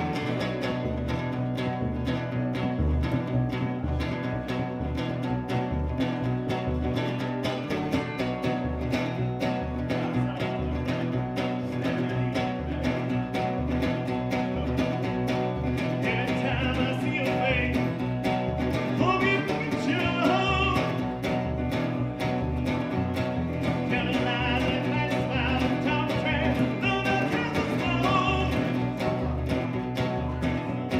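Live acoustic guitar strumming with a plucked upright bass underneath, playing a song at a steady pulse. A man's singing voice comes in about halfway through.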